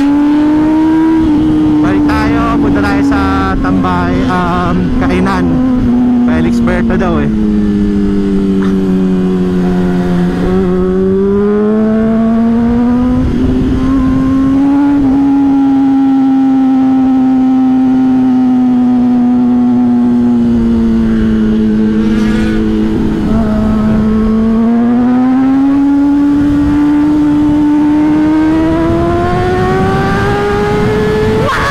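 Honda CBR600RR's inline-four engine heard from the rider's seat, running at high revs under steady throttle, its pitch sinking slowly, then climbing, dipping again and climbing toward the end. Wind rushes across the helmet microphone underneath.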